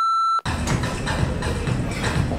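An electronic beep, one steady high tone, that cuts off sharply about half a second in, followed by a steady noisy background.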